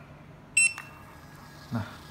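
Panda PRJ-R58B thermal receipt printer giving one short, high-pitched beep about half a second in as it powers on into self-test mode, followed by a faint steady whine as the self-test page feeds out.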